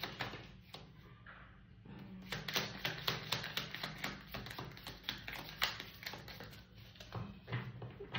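Tarot cards handled over a table: after a quieter first two seconds, a dense run of quick card flicks and taps as the deck is shuffled and a card is drawn and laid down.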